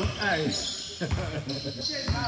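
Basketball bouncing on a hardwood gym floor, a few low thuds roughly half a second apart, echoing in the large hall, with players' voices around them.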